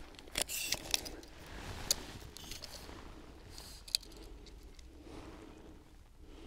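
Faint handling of a tape measure as its blade is pulled out and held along a gel block: a few sharp clicks and rattles in the first two seconds, one more about four seconds in, over light rustling.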